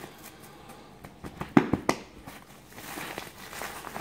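Black plastic parcel wrapping and packing tape crinkling and crackling as the parcel is pulled open by hand, with a cluster of sharp crackles in the middle.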